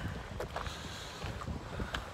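Wind rumbling on a handheld camera's microphone outdoors: a steady low noise.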